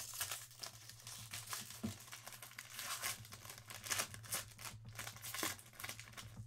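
A shiny foil trading-card pack wrapper, a Panini Encased football pack, being torn open and crinkled by hand, a quick run of small crackles.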